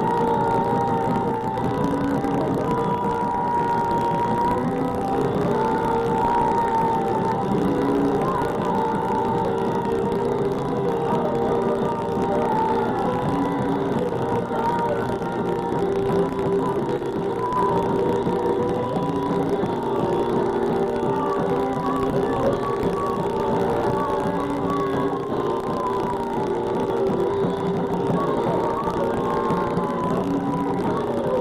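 Live rock band playing loud: electric guitar, bass and drums, with long held notes running on over the top.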